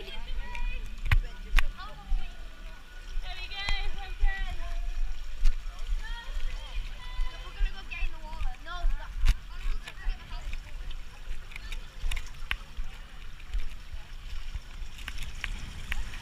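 Voices calling and laughing, starting with a laugh, mixed with water sounds and a few sharp knocks over a steady low rumble.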